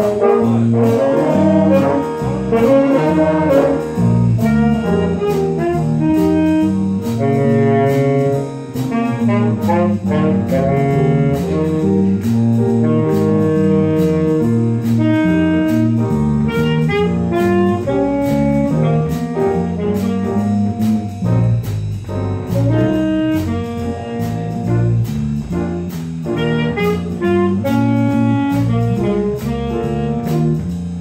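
Jazz band playing live: a saxophone section with trombone, electric bass and drums, moving through a run of held notes and phrases over a steady beat.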